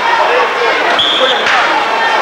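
Nearby spectators chatting, with a sharp thud about a second in from a football being kicked, joined by a short high tone.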